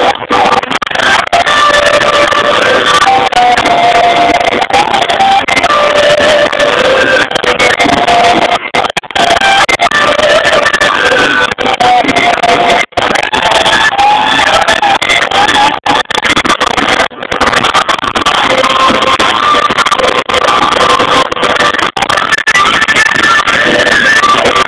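Live band music played loud, with held melody lines over the band. The recording cuts out briefly a few times.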